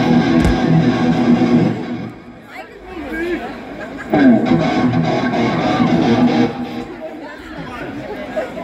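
Live rock band's electric guitars strumming loud chords, dropping back briefly about two seconds in and crashing back in about four seconds in, then thinning out near the end.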